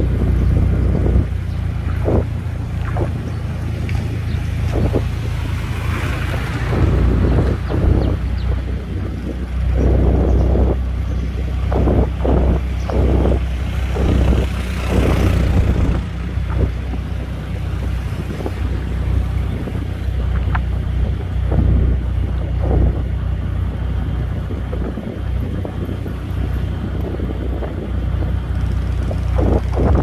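Wind buffeting the microphone over the steady low rumble of a moving vehicle, with irregular dull thumps throughout.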